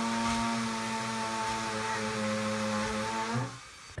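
A motor running with a steady hum. Its pitch rises briefly and then it cuts off near the end.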